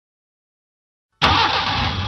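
Car engine starting as the ignition key is turned, coming in abruptly about a second in after silence and then running.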